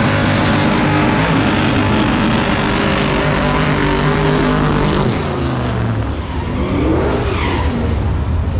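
Drag race car engine running loud at high revs with a steady note. The revs fall away about five seconds in, then climb again briefly near the end.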